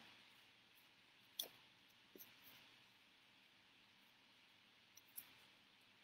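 Near silence, with a few faint clicks of paper being folded and creased: one about a second and a half in, a smaller one just after two seconds, and two more near the end.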